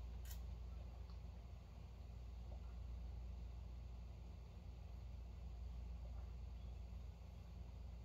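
Quiet room tone: a steady low hum, with one faint click just after the start.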